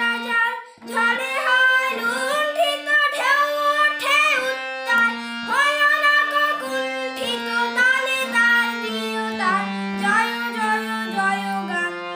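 A young singer's voice carrying a melody with wavering, ornamented pitch over instrumental accompaniment of steady held notes that change pitch every second or so. The sound dips briefly about a second in.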